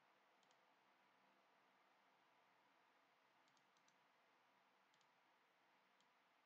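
Near silence, with a few faint computer mouse clicks in small groups: a pair about half a second in, a short cluster in the middle and another pair near the end.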